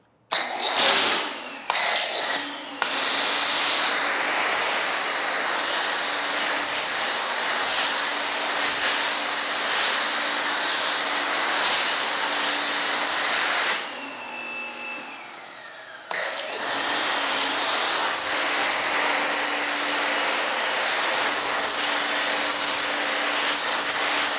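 Pressure washer running a foam cannon, spraying a thick, hissing jet of soap foam with a low motor hum underneath. It starts in a few short bursts of the trigger, then runs steadily. It stops for about two seconds a little over halfway through, then starts again.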